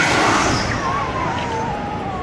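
Fire-show tower firing a fireball: a sudden loud whoosh of burning gas that fades away over about a second.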